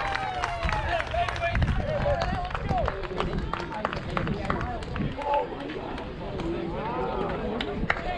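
Indistinct voices of players and spectators calling out and chattering over one another, with scattered claps.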